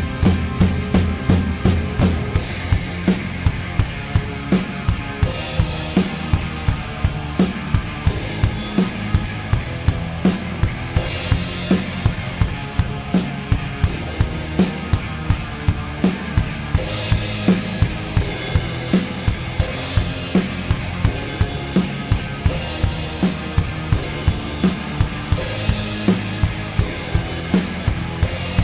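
Acoustic drum kit played along to the song's recorded backing track: a steady rock beat of kick and snare with Zildjian cymbals, and the cymbal wash swells at times over the sustained guitar and bass.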